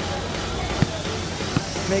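Busy outdoor fairground noise with music playing in the background, and two short knocks near the middle, less than a second apart.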